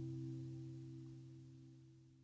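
The last chord of an acoustic guitar song rings out and slowly fades away, a few low notes held with no new strums.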